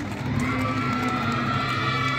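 Crowd of onlookers' overlapping voices, with a drawn-out high-pitched call held from about half a second in.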